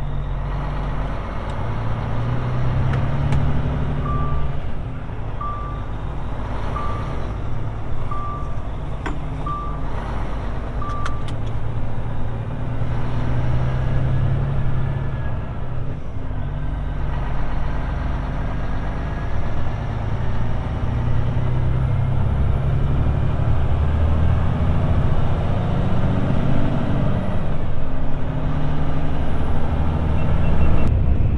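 Road train's diesel engine pulling away and accelerating through the gears, its pitch climbing and dropping back at each shift, heard from inside the cab. Six short high beeps about a second and a half apart sound a few seconds in.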